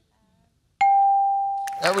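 Game-show scoreboard's answer-reveal ding: a single electronic chime that starts suddenly and rings out, fading over about a second, as the answer's points come up on the board. A man's voice comes in near the end.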